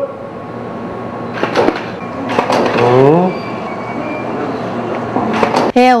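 Photo-studio sound during a shoot: steady room hiss with sharp clicks in two clusters, about a second and a half in and again near the end, and short snatches of a voice in between. Just before the end a sustained musical tone starts.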